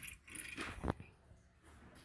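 Die-cast toy car pushed off and rolling across a rug: a faint rustle, with a sharp click a little under a second in.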